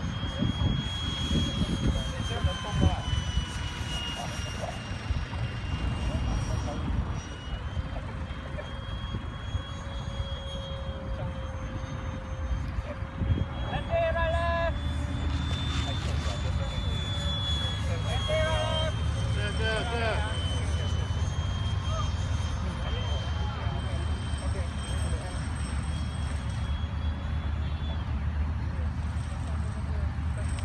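Electric ducted-fan whine of a Freewing F-18 radio-controlled model jet in flight, a high steady tone that drifts slowly up and down in pitch as it passes, over wind rumbling on the microphone.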